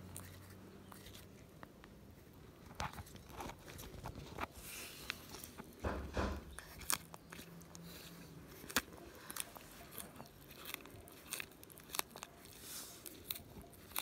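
A Sardinian land tortoise biting and chewing fresh lettuce leaves: irregular crisp crunches as its beak tears the leaf, with a dull low thump about six seconds in.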